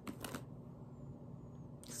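Two quick clicks as the lid of a small cosmetic jar is worked open by hand.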